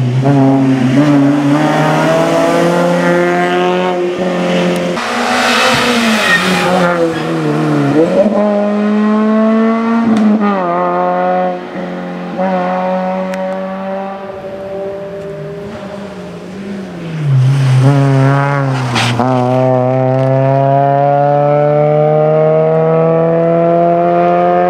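Rally car engine revving hard through the gears, its pitch climbing and dropping with each shift. It fades somewhat in the middle, then comes back loud and ends in one long, steady climb in pitch under acceleration.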